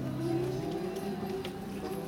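Voices singing long held notes that waver slightly, with a low steady hum underneath that fades out early on.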